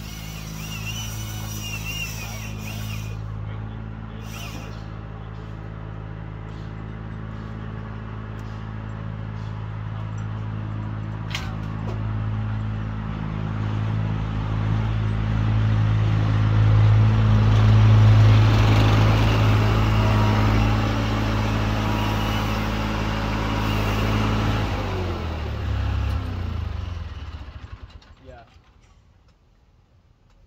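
Vermeer mini-skidsteer engine running, growing louder towards the middle, then shut off about 25 seconds in and winding down to a stop over two or three seconds.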